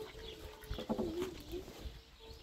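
A dove cooing: a low, pure steady note, then a lower note that wavers, with two brief knocks in between.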